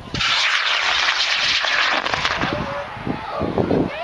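High-power rocket motor firing at liftoff: a sudden, loud rushing noise that starts right at the beginning and fades after about two seconds as the rocket climbs away. Spectators' voices are heard under it in the second half.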